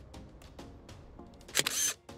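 Background music with a steady beat, and about a second and a half in a single loud camera-shutter sound effect.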